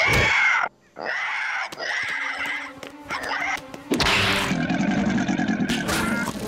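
Cartoon soundtrack of dramatic music and effects: a loud falling swoop at the start, a brief cut to silence, then sustained tense sound. About four seconds in it gives way to a wild creature's loud, rough screeching and growling as it pounces.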